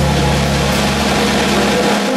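Jazz quartet playing loudly: tenor saxophone over electric guitar, double bass and a drum kit, with a dense wash of cymbals over held low notes.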